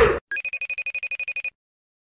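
Electronic telephone ring: a fast trilling tone of about ten pulses a second. It starts just after the music cuts out and stops suddenly after about a second.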